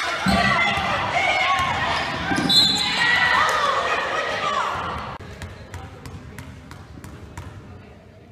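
Basketball game in a gym: players' and onlookers' voices echo over the court, and a referee's whistle blows once, briefly, about two and a half seconds in. Then the noise dies down and a basketball bounces on the hardwood floor several times in a row.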